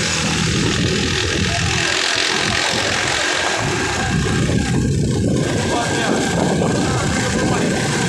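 Wind buffeting the microphone with a small motorcycle engine running underneath while riding, a steady rough rumble that goes on without a break.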